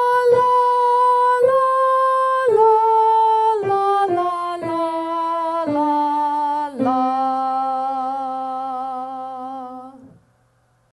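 A woman singing a workbook ear-training melody on "la", one syllable per note. The tune steps mostly downward over about nine notes and ends on a long held low note.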